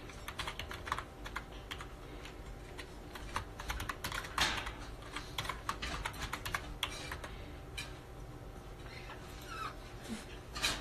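Typing: a run of quick, irregular key clicks and taps, with a few louder knocks near the middle.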